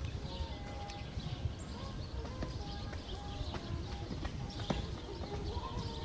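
Outdoor ambience: wind rumbling on the microphone, with scattered light footsteps on stone paving and faint held tones that step in pitch, like distant music.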